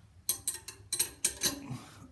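Steel wrenches clinking together as a combination wrench is fitted against a crow's-foot wrench: a quick run of sharp metallic clicks and clinks.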